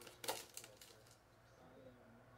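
Faint, brief rustle of a trading-card pack wrapper being pulled open in the first half second, then near silence.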